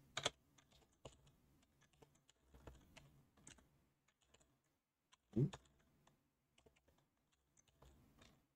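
Computer keyboard being typed on in quiet, sparse keystrokes, with two louder brief sounds, one just after the start and one about five seconds in.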